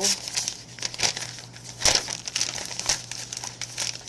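Wrapping material crinkling and crackling as it is handled, in irregular bursts of crackles with a louder crunch about two seconds in.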